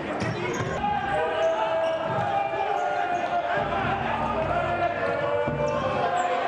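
Futsal ball being kicked and bouncing on an indoor hard court, with players' voices calling over it.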